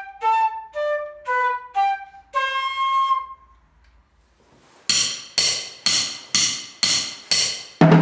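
Concert flute playing a melody of short notes that ends on a longer held note, followed by a brief pause. A steady series of sharp percussive ticks then sets in, about two a second, and a drum kit comes in loudly just at the end.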